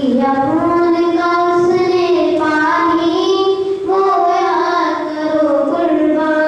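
A boy singing into a handheld microphone, unaccompanied, in long held notes that slide from one pitch to the next.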